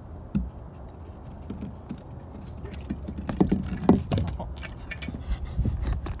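Knocks, clatter and rustling from hauling in a magnet fishing rope with a heavy catch and handling the camera, over wind rumble on the microphone. The knocks come thicker and louder in the second half.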